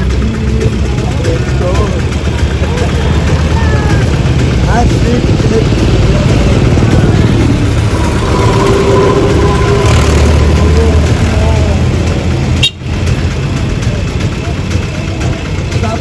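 Street traffic with vehicle engines idling close by, a low steady rumble, with people's voices mixed in. The sound drops out suddenly for a moment about three-quarters of the way through.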